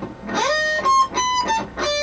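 Electric guitar playing a pedal-point lead lick: a slide up into a quick run of single sustained notes that keep returning to the same high note.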